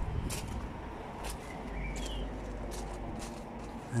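Outdoor background noise: a low steady rumble with a few faint clicks and one short rising chirp about two seconds in.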